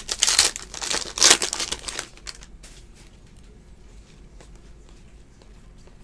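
Foil trading-card pack wrapper crinkling and tearing as it is ripped open by hand, in loud bursts over about the first two seconds.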